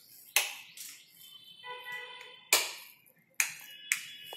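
Four sharp clicks or knocks, spread across a few seconds, with a faint held tone of several pitches together in the middle.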